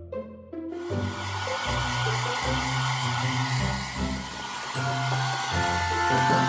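Hand-held hair dryer blowing, switched on about a second in and running steadily, over background music.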